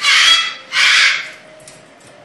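African grey parrot giving two harsh, raspy calls back to back, each about half a second long.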